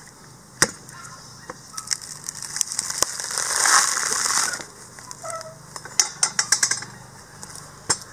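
Coconut husk being pried off on an iron dehusking spike: sharp cracks as the husk splits, a loud tearing rush of fibre ripping away about midway, then a quick run of snaps near the end.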